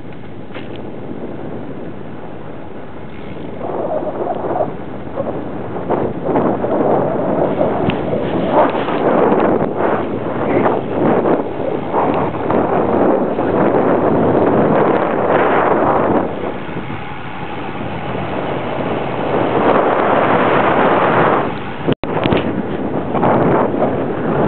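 Wind rushing over the microphone of a camera moving along a road, a noise that swells and eases in gusts, with a sudden brief cutout about 22 seconds in.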